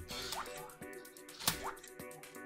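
Anki Vector robot giving two short rising electronic bloops while it thinks over a command, with a sharp click about one and a half seconds in, over steady background music.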